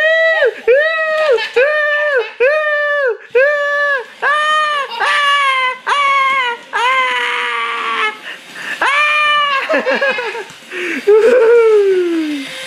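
A high-pitched voice making rapid, repeated wailing cries, about two a second, each rising and then falling in pitch, ending in a long falling wail near the end: a playful mock-crying sound rather than words.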